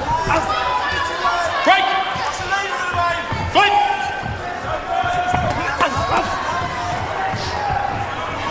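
Loud shouting voices around the ring, with held, gliding calls, mixed with dull thuds of kicks and punches landing in a kickboxing bout.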